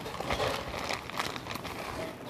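Plastic bag of shredded cheese crinkling as it is shaken, spilling cheese onto a pizza in a run of irregular soft rustles and taps.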